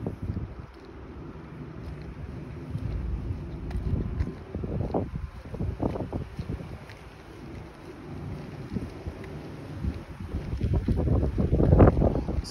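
Wind buffeting a phone microphone in uneven gusts, a low rumble that grows stronger near the end.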